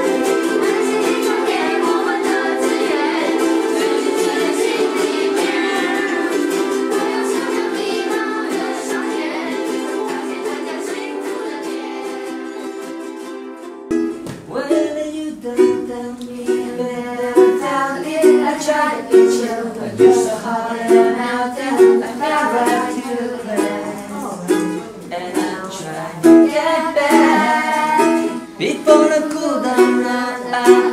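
Many ukuleles strumming together, a dense ringing chord that slowly fades. Then, after a sudden change about halfway, a single ukulele strummed in a steady rhythm of about one stroke a second, with a man singing along.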